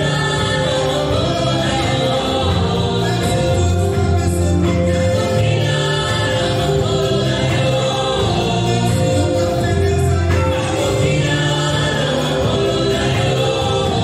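Live gospel worship music: a choir of voices singing together over keyboard and band accompaniment, with sustained chords and a steady bass line.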